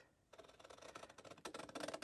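Scissors cutting through patterned scrapbook paper: a faint run of fine, crisp snipping ticks that starts about a third of a second in and grows a little louder near the end.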